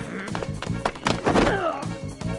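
Action-film fight soundtrack: music with a steady beat, overlaid with heavy thuds of blows and a body being thrown.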